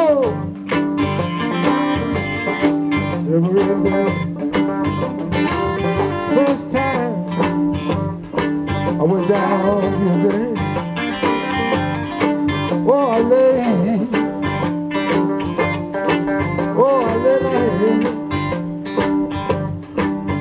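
A live blues band plays an instrumental break between sung lines: a fiddle with sliding notes over electric guitar and banjo, in a slow, steady groove.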